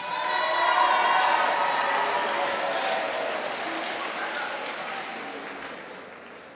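Audience applause in a hall, starting at full strength and fading away slowly over several seconds, with a few voices over it at first.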